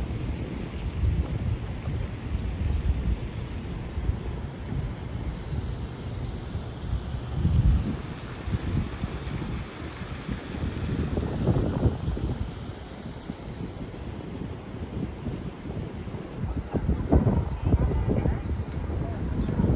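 Wind buffeting the microphone: a low, uneven rumble that swells and fades in gusts, strongest about seven and a half, eleven and a half and seventeen seconds in.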